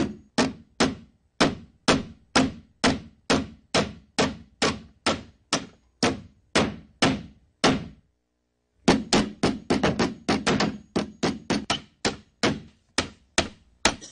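A rapid series of sharp knocks, each dying away quickly, about three a second; they stop for about a second midway, then come back faster and more crowded before slowing again. They are the soundtrack of a projected video artwork, heard through a hall's speakers.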